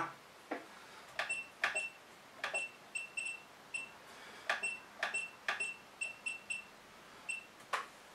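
Wanptek TPS605 bench power supply giving short, high beeps, each with a small click, as its front-panel knob and buttons are worked to set the voltage down from 30 V. There are about fifteen of them at an uneven pace.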